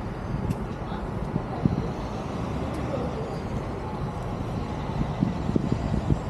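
Steady low outdoor rumble of traffic and wind noise, with a few soft handling knocks.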